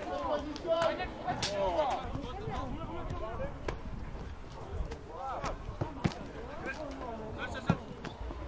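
Junior football players shouting and calling to each other across the pitch, with a few sharp thuds of the ball being kicked, the loudest near the end.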